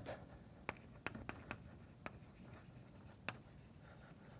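Chalk writing on a blackboard: a few faint, short taps and scrapes of the chalk, several close together in the first half and one more near the end.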